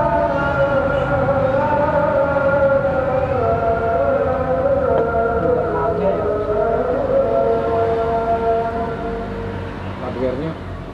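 A man's voice chanting an Islamic call to prayer over a mosque loudspeaker, in long held notes that slowly waver and glide in pitch. It fades near the end.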